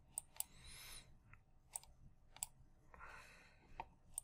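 Faint computer mouse clicks, several scattered through near silence.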